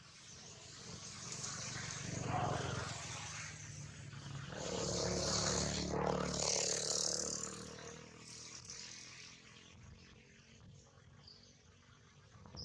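A motor vehicle passing by: its engine grows louder over the first few seconds, is loudest in the middle, and fades away.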